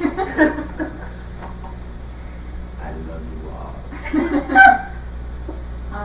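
Indistinct voices of people at a dinner table in two short spells, near the start and about four seconds in, the second ending in a loud, high-pitched vocal sound. A steady low hum runs underneath.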